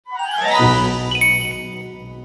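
Short musical logo sting with chiming, bell-like tones, a bright sparkle of high notes entering about a second in, then fading.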